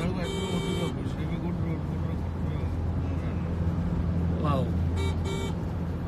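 Car driving along a road, heard from inside the cabin: a steady low hum of engine and tyre noise.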